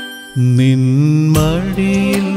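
Malayalam Christian devotional song music. After a brief dip, a held melodic line with bends in pitch comes in about a third of a second in.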